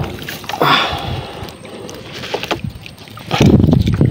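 Handling sounds of a wet net shrimp trap being gathered on the edge of a small fishing boat, with water against the hull, a sharp knock at the start and a heavier low rumble in the last second.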